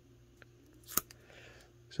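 Trading cards in plastic sleeves being handled: a faint tick, then a single sharp click about a second in, followed by faint rustling of the cards.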